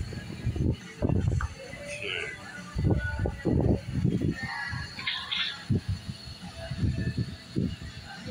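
Indistinct voices in the background, with irregular low bumps and rumbles throughout.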